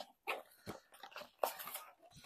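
Faint rustling and scraping of a cardboard fragrance box being handled and opened, in a handful of short strokes; the strongest comes about one and a half seconds in.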